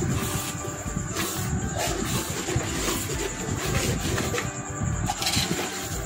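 A spoon stirring thick, wet sewai in a metal pot, scraping and squelching in irregular strokes.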